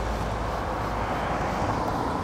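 A car driving past close by, with steady engine and tyre noise.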